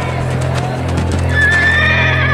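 A horse whinnying, a high wavering call starting a little past halfway, over a steady low droning music bed.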